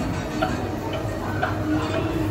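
The ticking-clock sound effect of the Tick-Tock crocodile figure, a regular tick-tock.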